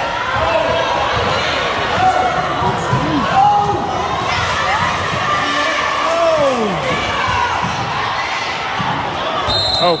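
Basketball being dribbled on a gym's hardwood floor during a youth game, under a steady din of spectators' voices and shouts echoing in the hall. A short high tone sounds near the end.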